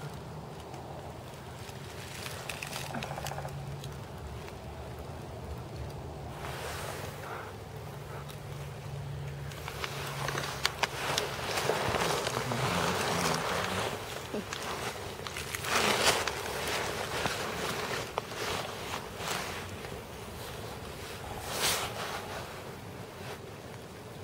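Wind gusting through bare trees and over the microphone, swelling in rushes several times, with a faint steady low drone underneath like a distant motor.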